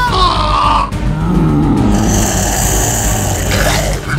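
Background music with a man's strained groaning and growling over it, as if choking and turning into a zombie.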